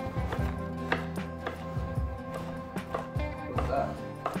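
Background music, over which a chef's knife strikes a wooden cutting board now and then, slicing small peppers into julienne strips.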